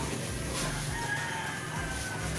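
A rooster crowing: one long drawn-out call starting about half a second in, over a steady low hum.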